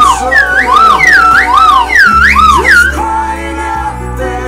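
Plastic slide whistle warbling: its pitch swoops rapidly up and down about four times in a row, loud over a recorded country-rock backing song.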